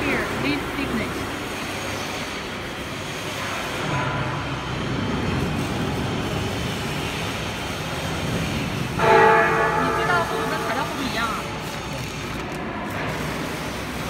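Steady machine-shop background noise with a low hum. About nine seconds in, a loud held tone with several pitches sounds for about a second.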